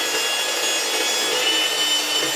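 Panasonic MK-GH1 electric hand mixer running steadily, its twin wire beaters whipping eggs, sugar and condensed milk until the eggs turn pale and foamy. The motor whine steps slightly higher about halfway through.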